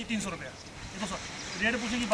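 Indistinct voices talking briefly, off the main microphone.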